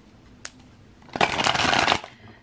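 A deck of cards being shuffled by hand: a quick, dense run of card flicks lasting about a second in the second half, after a single click near the start.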